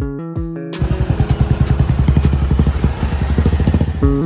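A moment of guitar music, then a vehicle engine running loudly close by, with a rapid pulsing beat of about nine pulses a second, until the music returns at the end.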